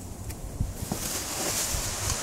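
Thin plastic bag rustling and crinkling as it is handled. The crinkling starts about two thirds of a second in and grows louder.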